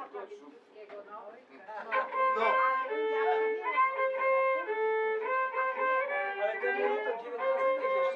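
A fiddle playing a slow melody of held notes, coming in about two seconds in after a short stretch of scattered voices.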